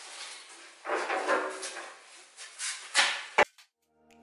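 A steel bumper being handled and offered up to a van's front panel: a scraping rustle about a second in, then several metal knocks and clicks, the loudest near the end, after which the sound cuts off suddenly.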